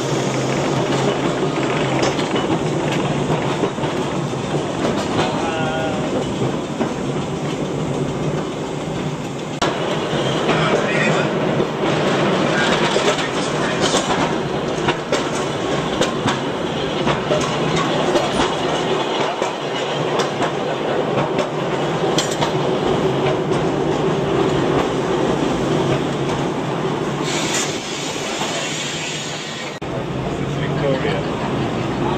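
A vintage tram running along its street track, heard from on board: a steady rumble of wheels on the rails with a few brief sharper clatters.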